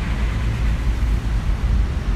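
A steady low rumble of background noise with an even hiss above it, and no distinct event.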